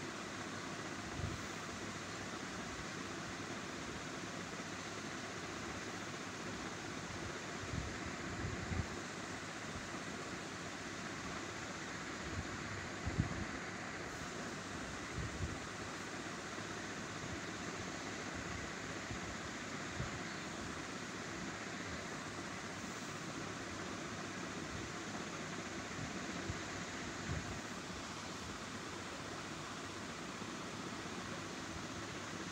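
Steady background hiss with a few faint low bumps scattered through it.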